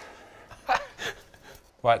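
A man's short gasp about three-quarters of a second in, with a smaller vocal sound just after, between bits of conversation; speech starts again near the end.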